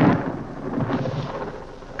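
Rumble of a thunderclap dying away, a deep rolling noise fading steadily.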